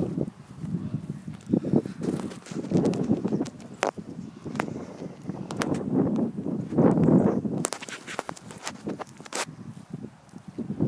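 Footsteps on rough ground, irregular steps about once a second, with scattered sharp clicks.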